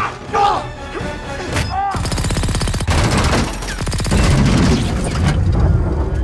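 Action-film sound mix: a struggle with short vocal grunts in the first two seconds, then a sudden loud, dense run of rapid crashes and impacts of a vehicle smashing and tumbling, over a music score.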